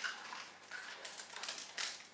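Faint rustling and scraping of a small cardboard perfume box being opened by hand and the bottle slid out, in a few short brushes.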